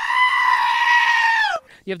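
A black-faced sheep gives one long, loud bleat held at a steady pitch, cutting off sharply after about a second and a half.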